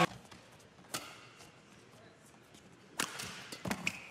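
Badminton rackets striking a shuttlecock in a rally: one sharp smack about a second in, then a louder hit and two or three more close together near the end.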